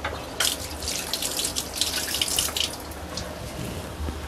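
Tamarind fish curry bubbling in an aluminium kadai on the gas flame: a burst of wet popping and spluttering for about two seconds, over a low steady hum.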